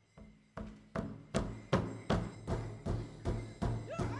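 Large Ojibwe powwow drum with a laced hide head, struck together by two drummers with drumsticks in a steady heartbeat rhythm, about two and a half strokes a second. The first strokes are soft, and the beat is full from about a second in. A singer's voice starts at the very end.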